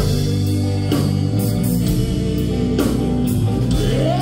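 Live blues band playing: electric guitar over a drum kit with cymbal and drum strikes.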